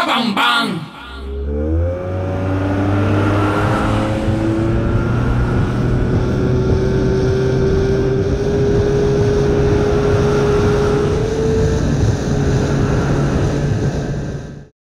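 The song ends about a second in; then a motor vehicle engine runs steadily, its pitch gliding up around two seconds in and slowly rising again later, with indistinct voices underneath.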